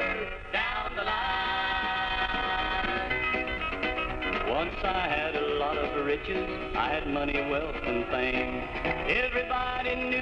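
Instrumental country music from a home reel-to-reel tape recording: a band passage with guitar and a few sliding notes, with no words sung.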